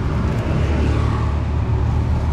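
Motorcycle and scooter engines passing close by on the street, a steady low engine drone.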